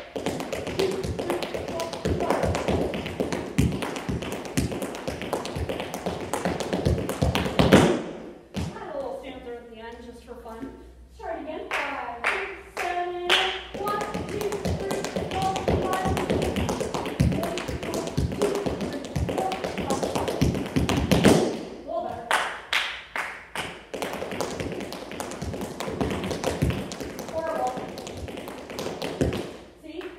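Tap shoes striking a hard studio floor in fast, dense runs of taps as a tricky rhythm step is practised at speed. There are three runs, broken by a pause of a few seconds about eight seconds in and a shorter one about twenty-one seconds in.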